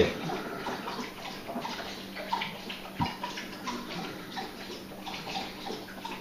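Steady running or trickling water in the background, with a faint low hum and a small click about three seconds in.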